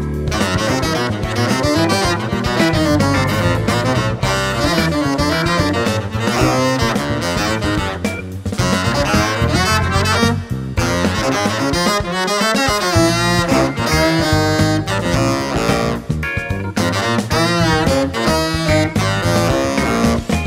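Tenor saxophone played through an Electro-Harmonix Micro POG octave pedal, a funky melodic line with octave doubling on the notes. Under it runs a funk backing track with bass and guitar.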